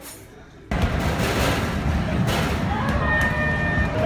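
Loud arcade din starting abruptly about a second in: dense noise from game machines and voices, with a few electronic tones sounding near the end.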